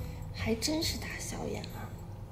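Speech only: a woman speaking a short line in Mandarin.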